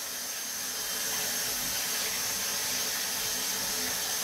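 Water running steadily from a bathroom basin tap, an even hiss.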